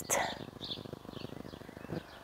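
Birds chirping faintly, a few short calls, over a steady low background noise.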